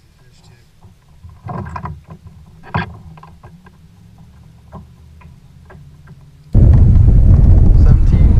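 Handling sounds in a kayak while a bass is held and unhooked: a short rustle and a sharp knock in the first three seconds, then a few faint clicks. About six and a half seconds in, loud wind buffeting the microphone cuts in suddenly.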